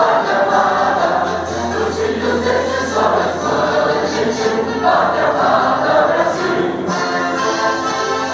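A choir singing with orchestra, an anthem played over a loudspeaker at a formal ceremony.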